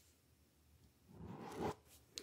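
A pen circling an answer on a paper questionnaire: one short stroke of pen on paper, starting about a second in.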